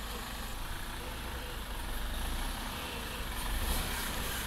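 Mercedes-Benz prototype truck moving slowly, a low steady rumble with a faint hiss above it, growing a little louder in the second half.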